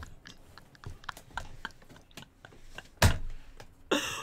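Quiet, irregular wet clicks of a mouth chewing, then one loud, short noisy burst about three seconds in.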